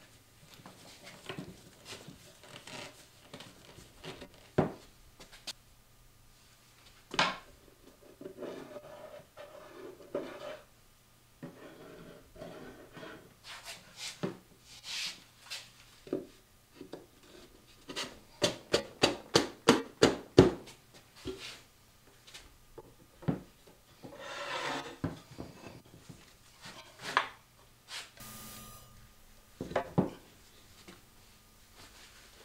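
One-handed bar clamps being tightened on a glued wooden box, including a quick run of about a dozen ratchet clicks, about four a second. Around them, wooden panels knock and scrape as a centre panel is fitted into the box.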